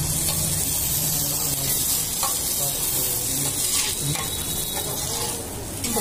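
Food frying on a hot flat griddle: a steady sizzle, with a few faint clicks.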